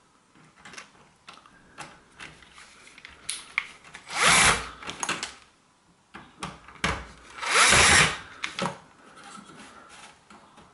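Cordless drill-driver running a screw into the housing of a new electric-shower pressure relief device, in two short bursts about four and seven and a half seconds in, each rising in pitch as the motor speeds up. Light knocks of handling come between the bursts.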